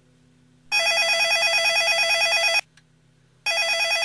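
Motorola mobile phone ringing with a fast warbling electronic ring tone: one ring of about two seconds, then a second starting about a second later. It is an incoming call from the NetGuardian LT voice alarm dialer.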